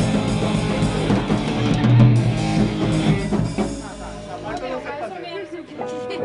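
Hardcore punk band playing at full volume in a rehearsal room: distorted electric guitar, bass and drum kit. The playing stops about three seconds in, and the rest is quieter, with a voice and loose instrument sounds.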